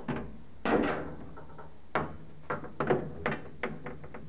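Irregular handling knocks and clicks, about seven in all, as a copper pipe with its brass union and olive is moved about and fitted onto a metal pressure cooker lid.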